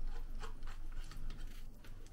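Metal fork stirring chips through curry sauce in a ready-meal tray, a run of short, irregular scrapes and clicks as the fork works through the chips and against the tray.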